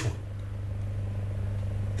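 A steady low hum fills a pause with no speech.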